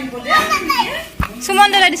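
A young child's high-pitched voice, with a single sharp click a little over a second in.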